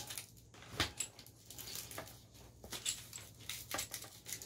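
Stiff coaxial patch lead being coiled by hand: scattered light rustles and small clicks as the cable and its metal connector knock against each other and the bench.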